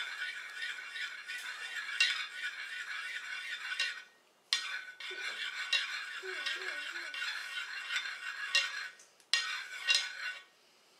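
A metal spoon stirring and scraping on a ceramic plate, swirling ranch dressing and barbecue sauce together, in continuous strokes with sharp clinks. It pauses briefly about four seconds in and again about nine seconds in.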